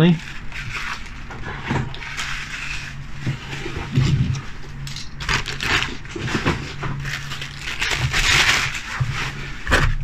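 Plastic bags and packaging rustling and crinkling as they are handled, in uneven bursts that are loudest a little past the middle and again near the end, over a steady low hum.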